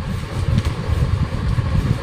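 A steady low background rumble, with faint rustling of a plastic garment cover as a pair of jeans is pulled out and unfolded.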